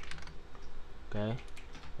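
Computer keyboard keystrokes: a few quick sharp clicks near the start, followed by a short spoken word.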